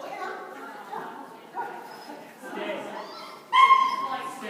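A dog giving one loud, high-pitched yelp near the end, over voices talking in a large indoor arena.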